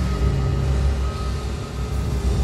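A steady, dense rumbling noise with a faint high steady tone, like a vehicle running, in the intro of a rap track before the beat comes in.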